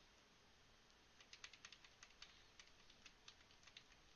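Near silence: room tone with faint, irregular clicking at the computer from about a second in, several clicks a second.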